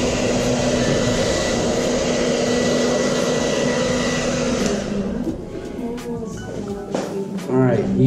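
Handheld hair dryer blowing steadily over a freshly gessoed canvas to dry the coat, then switched off and running down about five seconds in.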